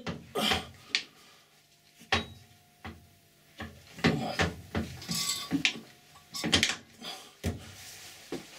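Metal clicks and clunks from the selector lever on a Colchester Student lathe's screw-cutting gearbox being worked into position, several separate knocks spread across a few seconds. The lever is stiff and crusty from little use.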